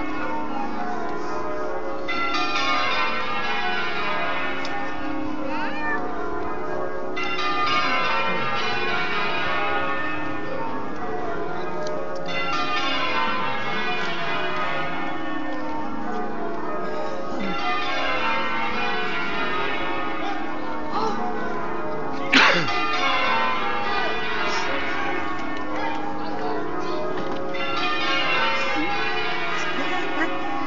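A peal of church bells ringing, runs of notes stepping down in pitch and starting over every five seconds or so. A single sharp knock cuts through about two-thirds of the way in.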